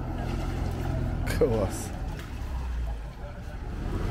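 Small cargo motorboat's engine running at low speed, a steady low hum as the boat passes close by.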